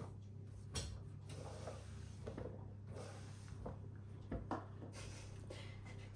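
Faint, irregular soft knocks and rubbing as diced butternut squash and a bowl are handled on a wooden cutting board, over a low steady hum.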